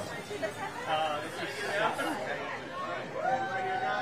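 Several people chatting and talking over one another in a small crowded room. Near the end one voice holds a single long, steady sound.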